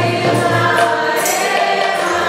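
Kirtan music: harmoniums sustain chords under group singing and a bamboo flute melody, with sharp percussion strokes, likely hand cymbals, recurring throughout.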